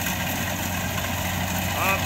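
Rice combine harvester's engine running steadily as the machine cuts and threshes standing rice, a constant low hum.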